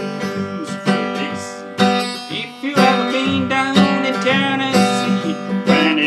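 Large-bodied Epiphone acoustic guitar being strummed, a fresh chord about once a second, each left ringing full.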